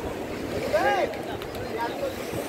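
Steady outdoor background rush, with a person's voice heard briefly about a second in.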